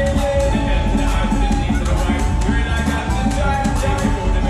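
Reel 'Em In! slot machine playing its bonus-round music while waiting for a pick: an upbeat tune with a steady, even beat and held melody notes.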